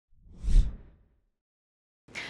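A single whoosh sound effect for a logo intro, swelling to a peak about half a second in and dying away within the first second.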